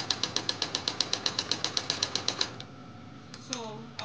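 Electric domestic sewing machine stitching a seam, a fast even clatter of about eight stitches a second. It stops about two and a half seconds in, as the stitching reaches its planned end point.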